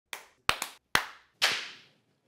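Two people clapping their hands: about five separate, irregular claps, each trailing off briefly.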